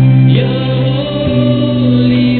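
A church hymn: voices singing long held notes over a sustained accompaniment, the chord changing about once a second.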